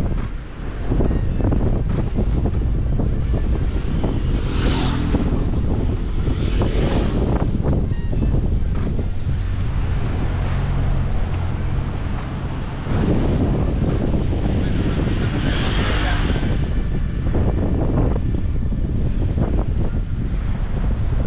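Wind buffeting the microphone, with road traffic passing on the bridge; two vehicles swell past, about four seconds in and again about fifteen seconds in.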